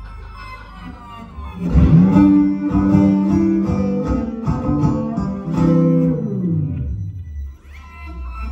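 Amplified banjo played solo: over a low sustained drone, a sharp attack about two seconds in opens a run of picked notes, which bend down in pitch and fade near the end.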